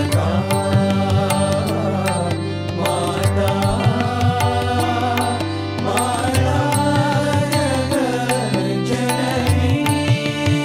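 Devotional Devi bhajan: a sung Hindu hymn over a held drone, with a steady beat of percussion strikes.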